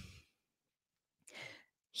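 Near silence, with one short, faint breath drawn in about a second and a half in.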